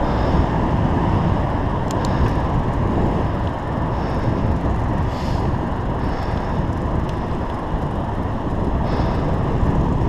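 Steady wind rush and road noise on a helmet-mounted camera's microphone while cycling, with motor traffic moving alongside.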